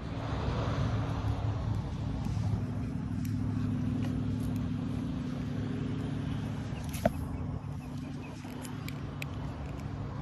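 An engine running steadily with a low, even hum. A single sharp click comes about seven seconds in.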